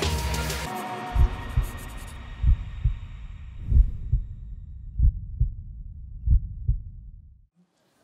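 Heartbeat sound effect: five low double thumps, lub-dub, about 1.3 s apart, fading out near the end. The loud music before it cuts off under a second in, and its fading tail lies under the first beats.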